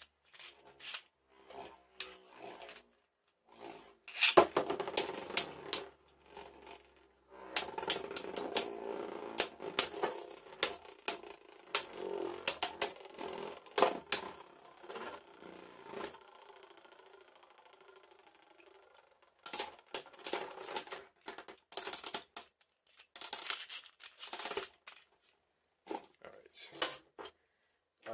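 Beyblade Burst spinning tops whirring and clashing in a plastic stadium, with many sharp clicks from their collisions. Near the middle the clashing gives way to a single steady whir that fades as a top spins down, followed by scattered clicks and knocks of plastic.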